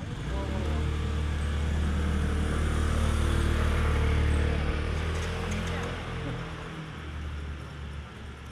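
A motor vehicle's engine runs at a steady, unchanging pitch close by. It grows louder over the first four seconds, then fades after about six seconds.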